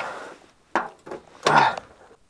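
Handling sounds: three short knocks and scrapes in quick succession, the last and loudest a little over half way through, with no engine running.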